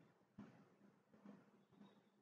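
Near silence: faint room tone, with one soft click about half a second in.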